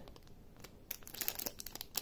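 Thin clear plastic bag crinkling as it is handled: soft, scattered crackles that get busier about halfway through.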